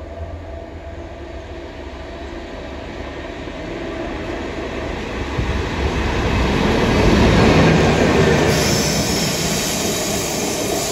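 Class 69 diesel locomotive with its EMD V12 engine, running light with no wagons behind it, approaching and passing. The engine's rumble and the wheel noise on the rails grow steadily louder to a peak about three-quarters of the way through, then ease slightly as it goes by.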